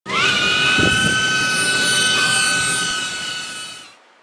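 DJI Avata cinewhoop drone's motors and ducted propellers spinning up into a steady high-pitched whine, which fades away over the last second.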